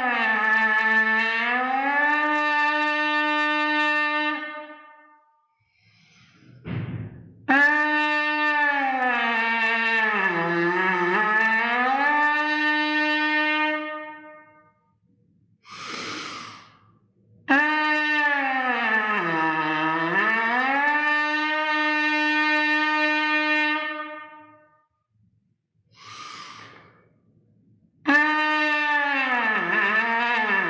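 Trumpet leadpipe buzz as a warm-up: four long buzzed tones, each bending down in pitch and sliding back up, dipping a little lower each time on the way down towards pedal F. Quick breaths come between the tones, and the room is echoey.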